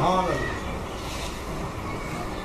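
A man's voice, amplified through a microphone, ends a phrase with a falling pitch in the first half second, then a pause filled only by steady background noise.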